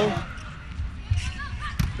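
Volleyball rally in an indoor arena. Low crowd rumble, faint court noises, and one sharp smack of the ball being hit near the end.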